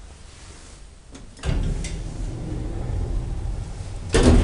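Thyssen elevator in operation: a few sharp clicks about a second and a half in, then a sudden steady low rumble that carries on.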